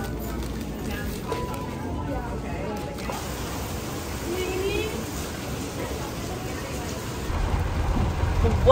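Grocery store background noise: a steady hum and hubbub with faint distant voices, and a short beep about a second in.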